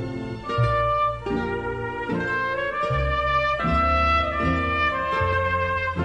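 Ranchera instrumental break played by a mariachi band: trumpets carry the melody in held notes over a low bass line that steps from note to note.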